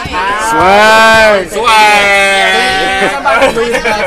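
A young man's voice making two long, drawn-out vocal calls. The first swoops up and back down; the second is held on one pitch for over a second, bleat-like.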